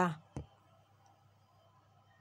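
A woman's voice finishes a word, then comes a single short, sharp click. After it there is only a faint low hum.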